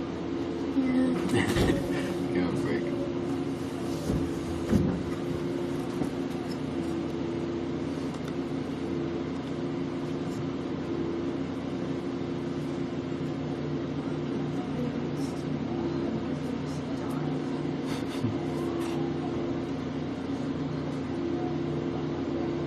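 Soccer match ambience: a steady low hum runs under faint, distant shouting from the field. A few louder shouts and sharp knocks come in the first five seconds, and another brief one comes near the end.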